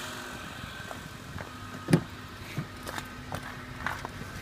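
Honda Accord 2.4-litre four-cylinder idling steadily in the background, with a few irregular knocks and footsteps over it; the loudest knock comes about two seconds in.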